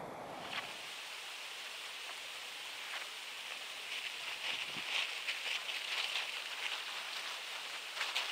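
Nylon tent fabric rustling as a tent is pulled from its bag and shaken out, a run of rustles from about four seconds in, over a faint steady hiss.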